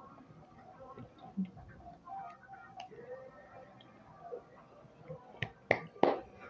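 A few faint sharp clicks, the two loudest close together near the end, over a quiet room with faint background voices or television.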